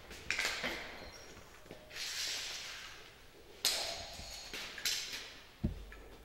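Flat fire hose and a nylon carrying strap with buckles being handled on a concrete floor: irregular rustling and slapping of fabric, with a dull thud about five and a half seconds in.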